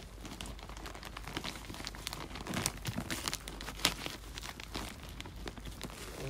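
Plastic potting-soil bag crinkling as it is handled: a run of irregular crackles, loudest around the middle.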